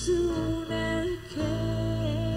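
Live band music: a rock band playing on stage with guitar and held notes over a steady low end, the sound dipping briefly about a second and a quarter in.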